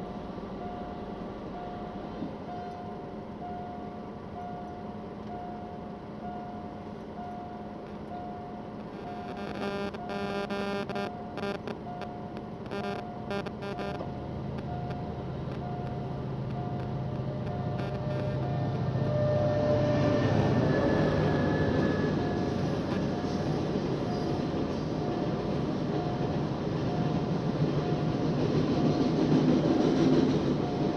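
Railway level-crossing warning signal beeping regularly, with a train's horn sounding in several short blasts about ten seconds in. A diesel freight train then rumbles louder as it approaches and passes over the crossing, and the wheel noise swells near the end.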